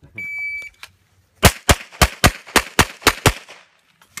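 A shot timer's electronic start beep, one steady high tone of about half a second, then a pistol, a Glock, firing eight rapid shots in four quick pairs about a second later.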